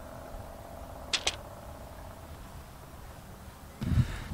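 A putter striking a golf ball on a short putt: two sharp clicks in quick succession about a second in, against a faint steady background.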